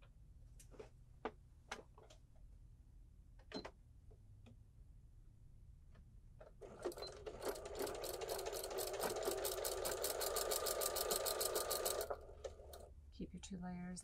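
A few light clicks, then about six seconds in a Necchi electric sewing machine starts stitching a seam through layered fabric. It runs at a fast, even needle rate for about five seconds and then stops.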